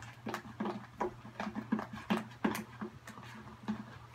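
A spoon stirring thick white glue mixed with glow-in-the-dark paint in a plastic bowl. The spoon clicks and taps irregularly against the bowl, a few times a second.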